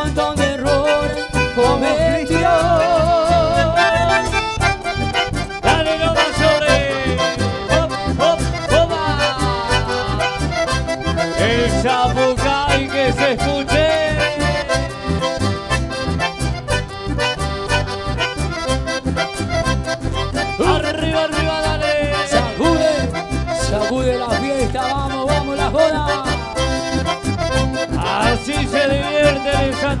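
Live chamamé band playing an instrumental passage led by accordion, with fast runs and trills over a steady bass and percussion beat.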